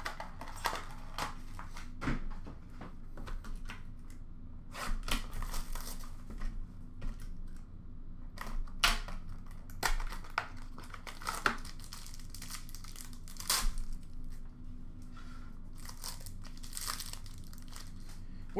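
Upper Deck SP Game Used hockey card packaging being torn open and handled by hand: irregular crinkling and tearing of the box and wrapper, with scattered sharp rustles of cardboard and cards.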